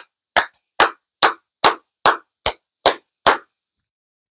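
One person clapping hands in a steady beat, a little over two claps a second, about eight claps, stopping about three and a half seconds in.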